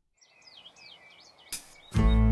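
Birds chirping in short repeated glides over a faint outdoor background hiss, with a sharp click about one and a half seconds in.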